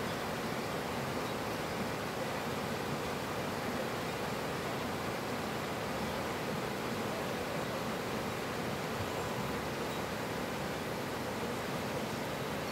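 Steady rush of a fast, shallow mountain stream running over rocks and small rapids.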